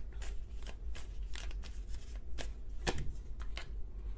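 A deck of tarot cards being shuffled by hand: an uneven run of short card slaps and flicks, two or three a second.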